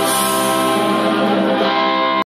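Electric guitar, acoustic guitar and keyboard of a small rock band holding one steady sustained chord, the song's closing chord ringing out.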